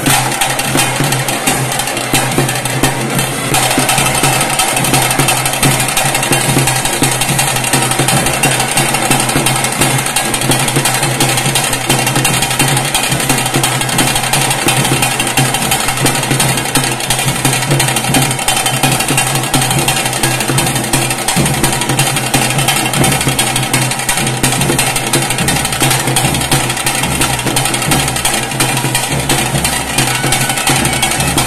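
Loud, continuous temple festival music accompanying a ritual procession dance, with rapid, dense drumming throughout and a steady held tone joining a few seconds in.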